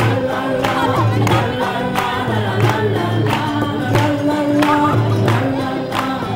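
Live acoustic band: group singing over strummed acoustic guitars, with a barrel-shaped hand drum keeping a steady beat of about one stroke every two-thirds of a second.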